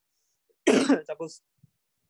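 A person clearing their throat once, a short burst about two-thirds of a second in.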